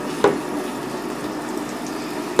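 Water running steadily from a hand-held shower wand into a bathtub, with one short click about a quarter second in.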